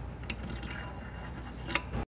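Socket ratchet clicking as bolts inside a Dana 44 rear differential are tightened, over a steady low hum, with a sharper click near the end.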